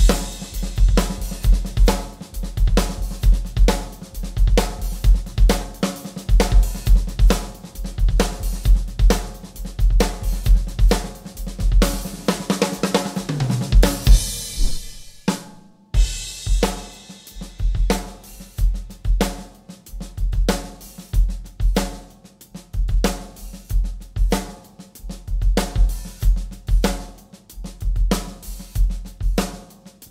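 Acoustic drum kit playing a ghost-note groove: steady hi-hat over bass drum, with accented snare hits and quiet snare ghost notes in between. About halfway through, the groove gives way to a cymbal wash and stops briefly, then starts again.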